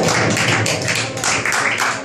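Audience hand clapping in an even beat of about four to five claps a second, following a punchline.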